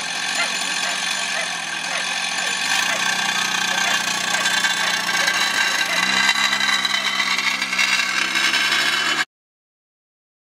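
An engine running steadily under people's voices, its low note shifting about six seconds in; the sound cuts off suddenly near the end.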